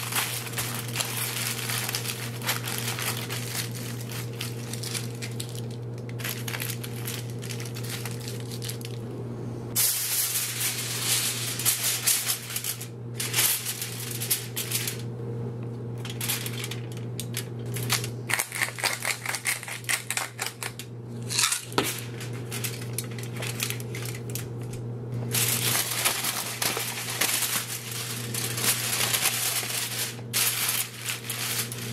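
Aluminium foil crinkling and rustling in spells with short pauses as it is folded and worked around a trout, over a steady low hum.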